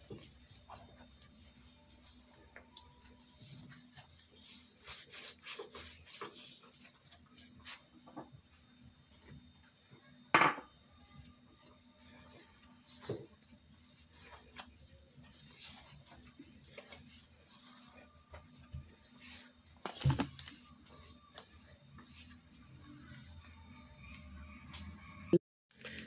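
Hands kneading soft dough in a glass mixing bowl: faint rubbing and squishing with scattered light taps, over a steady low hum. A few louder knocks against the bowl stand out, the loudest about ten seconds in and another about twenty seconds in.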